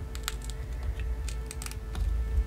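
Irregular light clicks and crackles of a silicone mold being flexed and peeled away from a cured epoxy resin casting.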